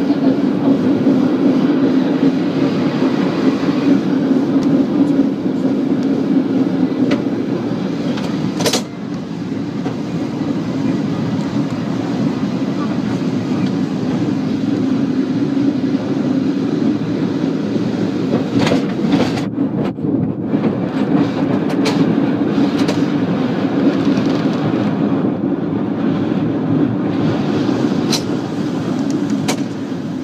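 San Francisco cable car in motion: a loud, steady rumble and whir of the car running on its rails and the cable moving in the street slot beneath, broken by a few sharp clanks, the clearest about nine seconds in.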